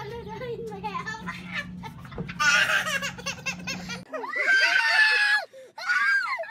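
People shrieking and laughing in high voices. There is a soft knock about two seconds in, then loud shrill screams, and in the last two seconds loud high-pitched laughing screams.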